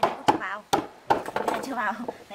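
Hammer blows on a timber frame: several sharp wooden knocks in quick succession, with a brief voice between them.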